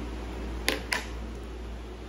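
Low steady room hum with two short, sharp clicks in quick succession about two-thirds of a second and one second in.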